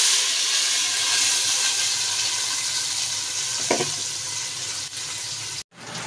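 Ingredients poured into hot oil in a large aluminium cooking pot, sizzling loudly at once and slowly dying down.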